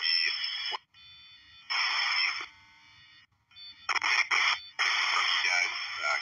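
Military UHF aircraft radio traffic received over a scanner: a pilot's transmission cuts off about a second in. It is followed by bursts of radio static as the channel opens and drops, one just under a second long, then a choppy run of hiss near the end, with faint steady tones in the quiet gaps.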